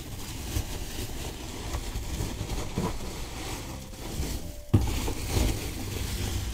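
Polystyrene packing peanuts rustling and squeaking as hands rummage through them in a cardboard box: a continuous crackling scrabble, with one sharper click near the end.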